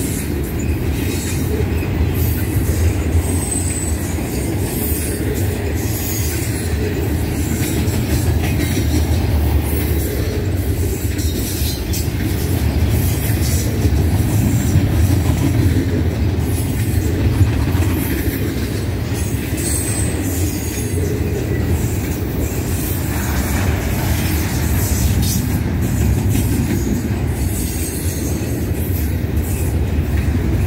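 Double-stack intermodal well cars rolling past close by: a steady, heavy rumble of steel wheels on rail, with a couple of brief high-pitched squeals.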